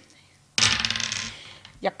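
Four six-sided dice thrown onto a tabletop, clattering and rolling. The clatter starts suddenly about half a second in and dies away over roughly a second as the dice settle.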